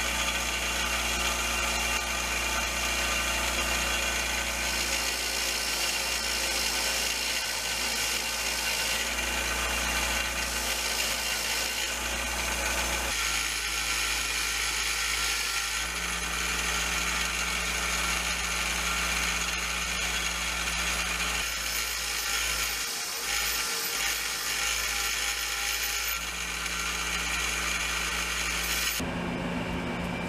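Bench grinder running with a knotted wire wheel, the wheel scrubbing the rough cast head of a hatchet-hammer multi-tool that is pressed against it. The sound changes several times as the work is moved against the wheel, and cuts off suddenly shortly before the end.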